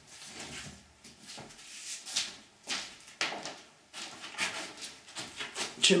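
Irregular rustles and soft knocks of people moving about a small room, a few short strokes every second or so.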